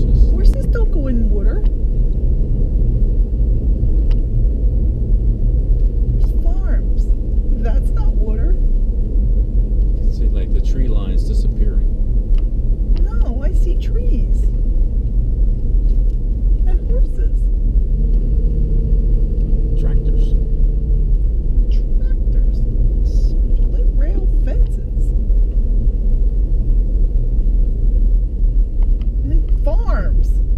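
A car driving along a country road, heard from inside the cabin: a loud, steady low rumble of road and engine noise.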